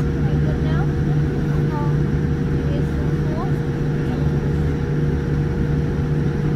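Steady cabin noise inside a Boeing 787-9 on the ground, a loud even low drone with a constant hum from the idling engines and cabin air system.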